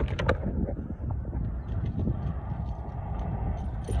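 Steady low outdoor rumble picked up by a wired earphone microphone, with a few short clicks right at the start.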